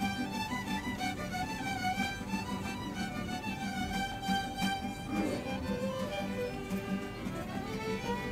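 A small band of several violins with guitars playing a tune: the violins carry the melody together over a steady strummed guitar rhythm.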